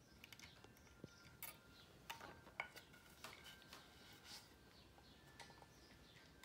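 Near silence with scattered faint, light clicks and taps from handling the clock's thin metal hands on the movement shaft.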